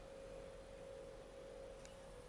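A faint, steady single-pitch tone held level, over quiet room tone, with one faint tick near the end.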